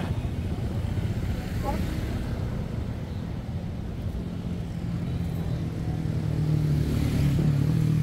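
Steady low hum of road traffic passing along a street, with one engine's drone growing louder over the last few seconds as a vehicle approaches.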